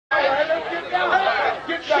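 Several men talking over one another around a dice game, with one voice urging "come on, come on" near the end, as a player calls for his roll.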